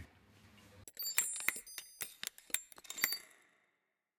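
Short electronic sound logo for the 公視+ (PTS+) end card: a quick, uneven run of sharp clicks with bright, high chiming tones. It begins about a second in and stops cleanly about three and a half seconds in.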